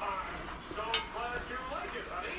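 A cooking utensil knocks once against the metal pot about a second in while chopped cabbage is being stirred, with faint voice-like talk underneath.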